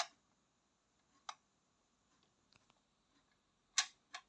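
A few faint, sharp clicks over near silence: one right at the start, one about a second in, and a louder pair near the end.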